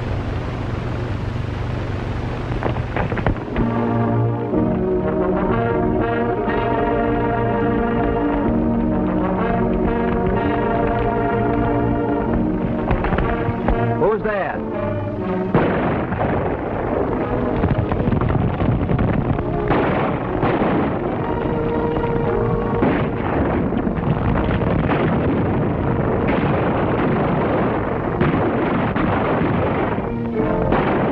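Film score music starting after a few seconds of low hum; from about halfway a dense, loud mix of gunshots and galloping horses joins in, with music under it.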